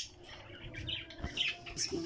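A few short, faint bird chirps over a low steady hum.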